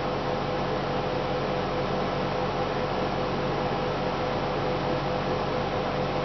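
Steady hiss with a low hum and a faint steady tone underneath, unchanging throughout: the room's background noise, such as an electrical hum or an appliance or fan running, with no other sound standing out.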